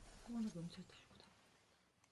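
A short, quiet spoken phrase, low and close to a whisper, in the first second, then near silence.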